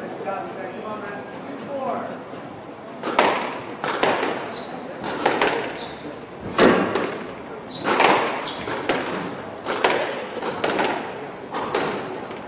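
Squash rally: the ball is struck by rackets and smacks off the court walls about once a second, each hit sharp and echoing in the hall, starting about three seconds in.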